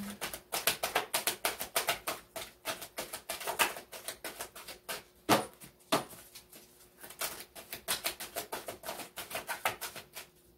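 A deck of cards being shuffled in the hands: a rapid, uneven run of soft card clicks and flicks, with two louder snaps a little past halfway.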